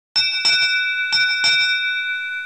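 A bell struck four times in two quick pairs, the strikes of each pair about a third of a second apart, its bright tones ringing on and fading after the last strike.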